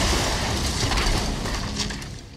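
A loud rumbling noise that fades steadily over the second half, with faint low steady tones coming in near the end.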